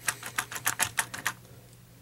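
Rapid light clicking, about eight clicks a second, as a Feisty Pets plush cat is squeezed and its plastic face flips from cute to snarling; the clicks stop a bit over halfway through.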